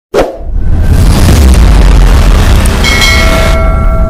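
Sound effects for a subscribe-button animation: a loud, bass-heavy whoosh that starts abruptly and holds steady, with a chime of ringing tones about three seconds in as the button turns to 'subscribed' and the bell appears.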